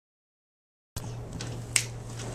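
Silence for about a second, then room sound with a steady low hum and a few sharp clicks, one loud one near the end.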